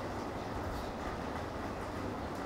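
Steady background noise, a continuous low rumble and hiss with no distinct events.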